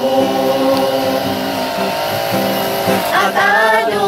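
A mixed group of young men and women singing a gospel song in the Ayangan Ifugao language together with an acoustic guitar. They hold a long note, then move on to new words about three seconds in.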